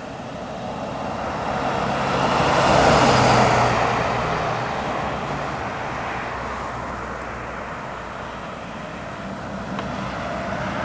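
Road vehicles, an ambulance van among them, driving past: tyre and engine noise swells to its loudest about three seconds in, then fades as they move away, over a low engine hum.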